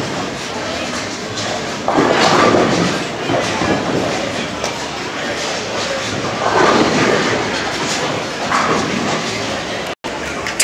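Bowling alley noise: a rolling rumble of balls and lane machinery, swelling twice, with people talking in the background.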